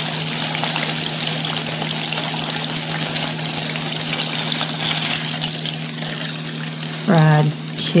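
Floured chicken pieces frying in a pot of hot oil: a steady sizzle, with a low steady hum underneath. A man's voice comes in near the end.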